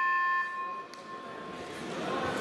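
End-of-bout signal in a wrestling hall: a held electronic tone that stops about half a second in, its note fading away over the next second.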